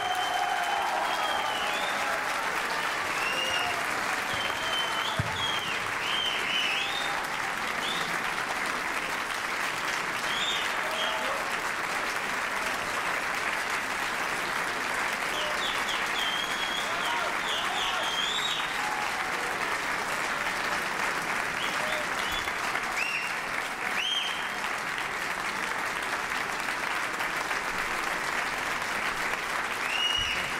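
Large audience applauding steadily, with short high whistles and voices calling out above the clapping.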